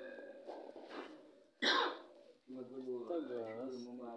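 Indistinct men's voices in a small room, with one short, loud, sudden burst about one and a half seconds in.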